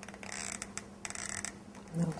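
Two short bouts of light rustling with small clicks as metal craft string and beads are handled, over a faint steady hum.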